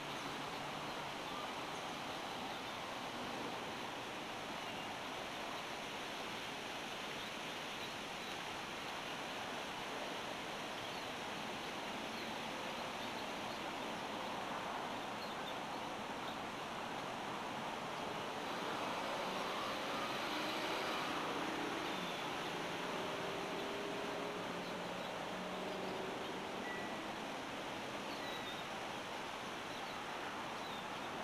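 Steady outdoor background hiss that swells somewhat about two-thirds of the way through, with a brief faint high chirp near the end.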